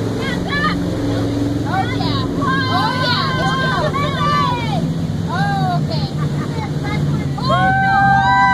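Jet boat engine running with a steady low drone while passengers whoop and shout over it; near the end a long held cheer starts.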